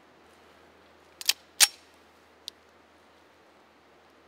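A few quiet mechanical clicks from a Colt 1911 pistol being handled and readied to fire: a close pair a little over a second in, a sharper click just after, and a faint tick about a second later.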